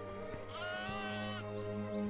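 A lamb bleating once: a single wavering call just under a second long, starting about half a second in, over background music.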